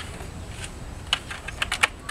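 Irregular light clicks and knocks from a honey badger moving and scrabbling inside a hollow plastic enrichment feeder, its claws and body striking the plastic, with a cluster of sharper clicks near the end.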